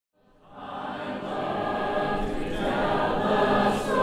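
A choir singing, fading in from silence during the first second and then holding steady.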